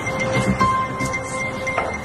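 Background drama score: sustained tones over a low pulse that recurs about every half second.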